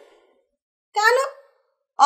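Speech only: a woman says one short word with a falling pitch about a second in, with silence before and after it.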